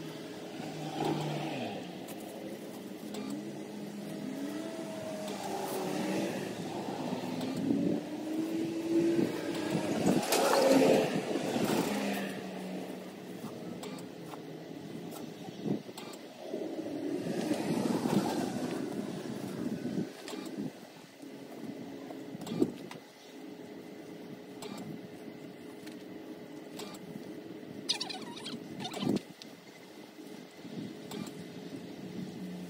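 Road vehicles passing by, several in turn, each swelling and fading over a few seconds, with engine pitch gliding as one goes past; the loudest passes about ten seconds in. A few sharp clicks come in between.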